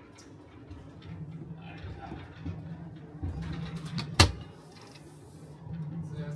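Curved cupboard door inside a Go-Pod mini caravan being swung shut, closing with one sharp clack about four seconds in.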